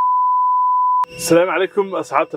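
A steady, single-pitched test-tone beep, the reference tone played with television colour bars, cutting off suddenly about a second in. A man's voice then begins talking.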